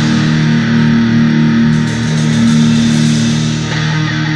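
Black thrash metal recording: electric guitars holding long, low notes.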